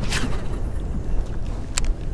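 Steady low wind rumble on the microphone over open water, with a brief swish just after the start and a single sharp click near the end.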